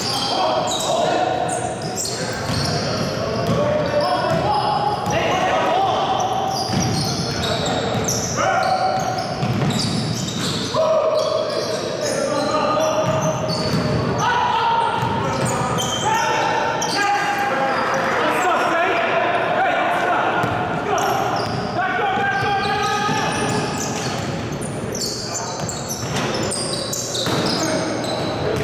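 Indoor basketball game: the ball bouncing on a hardwood court and players calling out, their voices echoing in a large gymnasium.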